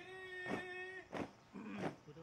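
Synchronized marching footsteps of a troop stamping in step, about one stamp every two-thirds of a second. A long, flat-pitched call is held over the first half, cut off about a second in.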